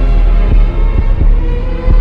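Sped-up hip-hop instrumental with reverb: a constant deep bass under sustained synth chords, with a heavy drum hit every half second to a second.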